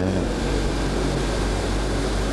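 Steady rushing background noise with a low hum, as loud as the speech, filling a pause between spoken phrases.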